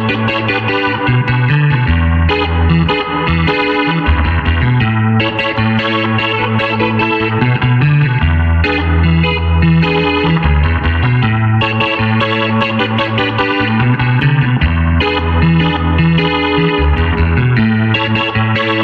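Clavinet playing a funk jam: a repeating bass line in the low notes under short, rhythmic chord stabs.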